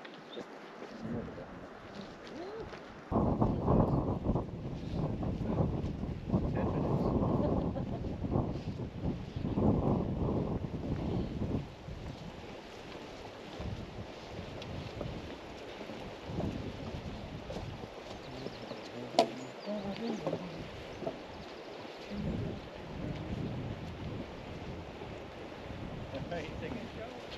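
Wind gusting on the microphone for several seconds, then dying down to lighter outdoor noise, with one sharp click about three quarters of the way through.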